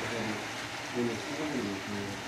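Faint conversation in the background, a person's voice talking over a steady low hum.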